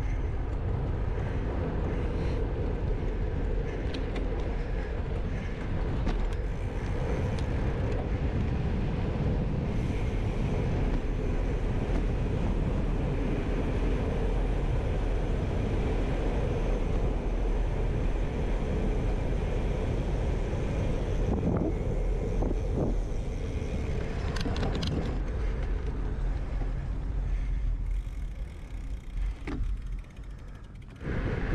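Steady wind rush on a handlebar-mounted action camera's microphone, mixed with bicycle tyre noise on asphalt as a gravel bike rolls along. It quiets near the end as the bike slows.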